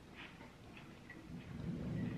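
Faint chewing of a Ritz cracker topped with pimento cheese spread: small scattered crunches and clicks, with a low rumble building near the end.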